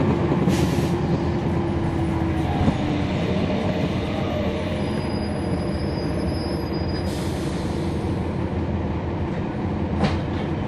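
Cabin sound aboard a NABI 40-SFW transit bus with its Cummins ISL9 inline-six diesel running: a steady engine drone and rumble. A whining tone runs through the first three seconds, and there are two brief hisses, about half a second and seven seconds in.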